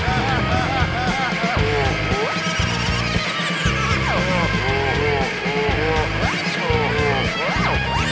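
Live psychedelic punk rock band playing, with a bass-and-drum pulse under warbling, swooping lead sounds that arch up and down in pitch over and over.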